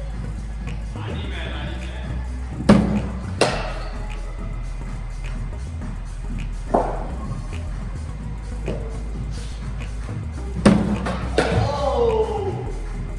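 Cricket balls fired from a bowling machine and struck by the bat: sharp knocks, a pair less than a second apart a few seconds in, a single knock in the middle, and another pair near the end.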